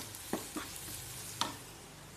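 Chopped onions and green chillies sizzling steadily as they fry in a nonstick pan, with three sharp knocks of the spatula against the pan as they are stirred.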